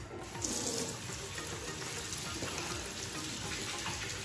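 Bathroom sink tap running, water pouring steadily into the basin; it starts suddenly.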